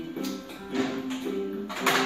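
Background music: held melodic notes with plucked guitar, broken by a few sharp percussive hits, the loudest near the end.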